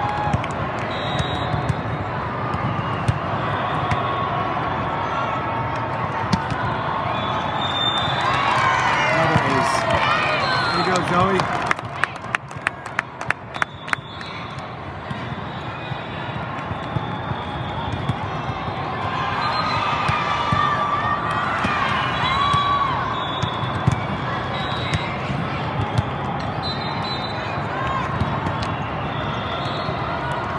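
Din of a busy indoor volleyball hall: many voices of players and spectators from several courts, short sneaker squeaks on the sport court, and sharp smacks of the volleyball. A quick run of sharp knocks comes about twelve seconds in.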